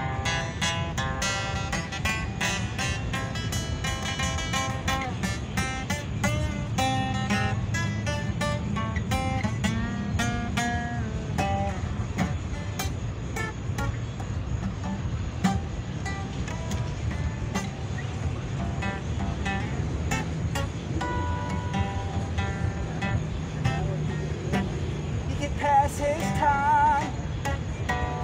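Acoustic guitar strummed and picked in a steady instrumental passage, over a low steady rumble, with wavering pitched notes coming in near the end.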